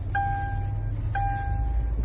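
A car's warning chime sounding inside the cabin: a steady single-pitched tone held for most of a second, repeating once a second, over a low cabin rumble.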